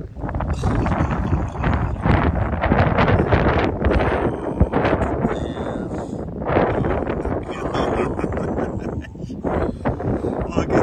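Wind buffeting the microphone: a loud rushing rumble that rises and falls in gusts.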